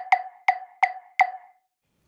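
Wooden hand percussion struck in an even rhythm, about three knocks a second, each a short pitched knock with a brief ring. The knocks stop a little over a second in.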